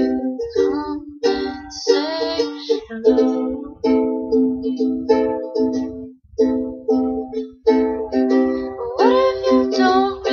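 Ukulele strummed in a steady rhythm of chords, with a woman's voice singing a few bending notes around two seconds in and again near the end.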